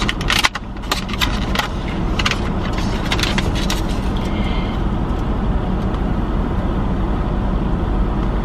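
Steady low hum of a running car heard from inside the cabin, with several sharp clicks and rustles in the first few seconds.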